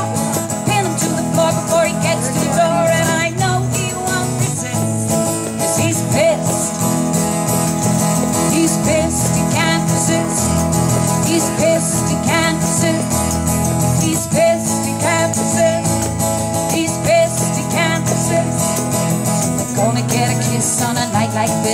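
Live acoustic performance: a woman singing into a microphone while strumming an acoustic guitar.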